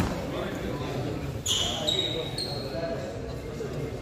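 A badminton racket strikes the shuttlecock with a sharp crack at the start. About a second and a half in, players' court shoes squeak in a short high-pitched run on the court surface, over the chatter of voices in the hall.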